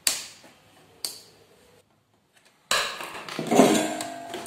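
Two sharp clicks on hard plastic, about a second apart, as a small switch is handled and pressed into a cassette player's plastic front panel. After a brief silence, a louder continuous sound starts near the end.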